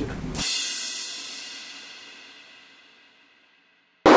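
A single cymbal crash that rings out and fades away over about three seconds.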